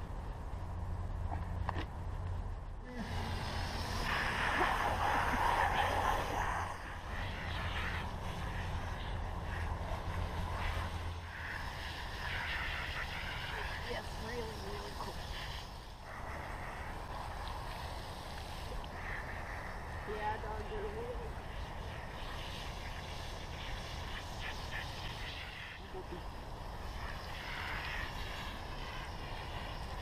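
Garden hose water spraying onto a dog and splashing on wet pavement as the dog is washed, a steady hiss that is loudest a few seconds in, with a low hum beneath it for the first ten seconds or so.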